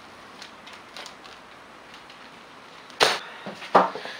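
Small parts handled and set down on a table: a few faint ticks, then two sharp clicks about three seconds in, less than a second apart.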